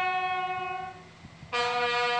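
Military brass band playing a slow piece in unison: a long held note fades out about a second in, and after a short pause a lower note starts and is held.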